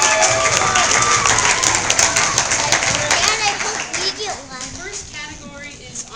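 Audience clapping and cheering, with raised voices calling out over the applause. The clapping dies away after about four seconds, leaving scattered chatter.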